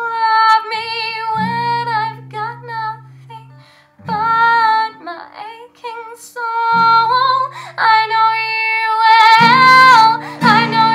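A teenage girl singing solo while accompanying herself on a capoed acoustic guitar: long held sung notes with vibrato over ringing guitar chords. The music dips briefly just before four seconds in, then returns.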